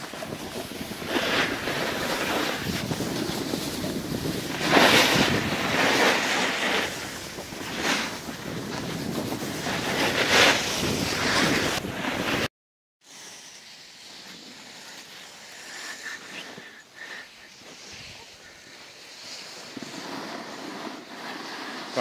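Skis sliding and scraping over packed snow with wind rushing on the microphone, surging louder a couple of times, around a quarter and about halfway in. It cuts off suddenly just past halfway, leaving a much quieter, faint hiss of snow and wind.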